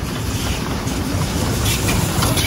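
Steam locomotive passing close by, a steady heavy rumble with wind buffeting the microphone.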